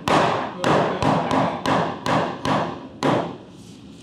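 Hammer striking a wooden top plate to knock it over into plumb: about eight blows, roughly two a second, each with a short ringing tail, stopping about three seconds in.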